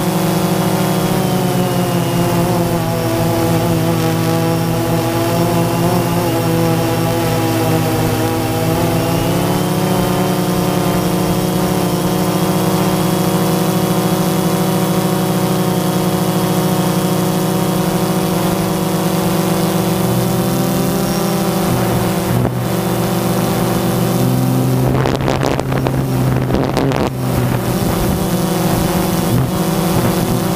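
Quadcopter drone's electric motors and propellers humming steadily, heard up close through its onboard camera. The pitch dips slightly and rises again about ten seconds in. A brief rough crackle breaks in near the end.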